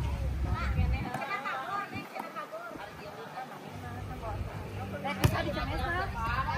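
Faint voices chattering on the court, with one sharp slap of a volleyball being struck about five seconds in.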